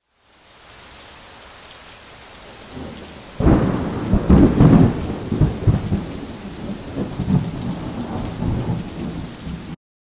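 Thunderstorm: steady rain, then a loud thunderclap about three and a half seconds in that rolls on as a deep rumble before cutting off suddenly near the end.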